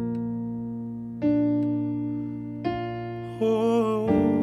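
Slow electric piano chords on a Yamaha stage keyboard. A new chord is struck about every second and a half and left to ring and fade. Near the end a sung voice with vibrato comes in over the chords.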